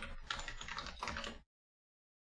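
Quick typing on a computer keyboard: a fast run of keystrokes that stops about one and a half seconds in.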